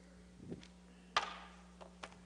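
A soft thump about half a second in, then a single sharp knock, the loudest sound, ringing out in a large reverberant room, over a steady low electrical hum.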